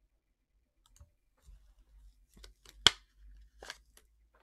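A few quiet, scattered clicks and taps from handling things on a desk, starting about a second in, with one sharp click near three seconds in.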